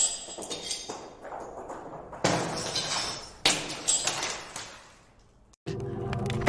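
Three crashes, each a sudden hit that fades away over about a second. They come at the start, a little after two seconds, and about three and a half seconds in.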